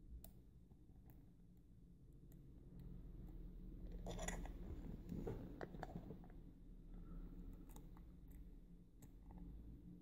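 Faint metallic clicks and scrapes of a Peterson hook pick working the pin tumblers of a five-pin Cisa half euro cylinder under tension, the cylinder sitting in a false set. A denser run of scraping and clicking comes in the middle.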